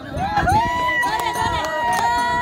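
A voice slides up into one long, high, steady held note, over the beats of a madal hand drum.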